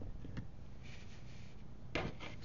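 Quiet room tone with a low steady hum, a faint click early and a soft brief rustle about a second in.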